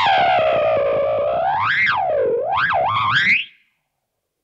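MXR Carbon Copy Bright analog delay pedal self-oscillating: a loud pitched feedback tone drops in pitch as the knob is turned, then swoops up and down about three times. It cuts off suddenly near the end.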